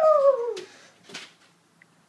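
A young child's voice imitating an aeroplane: one falling "neeow" call that glides down in pitch over about half a second, followed by a short noisy rustle about a second in.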